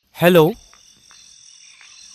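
A steady high-pitched chorus of frogs and insects, coming in suddenly with a spoken "hello" about a quarter second in and holding on at a low level behind it.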